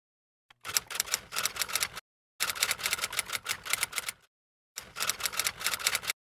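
Typewriter keys clacking out text in three quick runs of keystrokes, about six a second, with short pauses between the runs, starting about half a second in.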